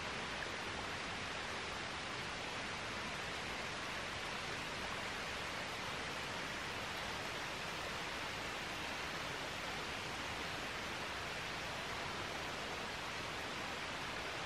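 Steady, even hiss with no distinct events in it.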